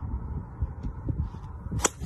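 Steady low outdoor rumble, wind-like, with faint scattered ticks and one sharp click near the end.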